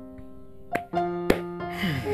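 Keyboard background music with long held notes, broken by three sharp knocks, the last the loudest, a little under a second in, and a downward swoop near the end.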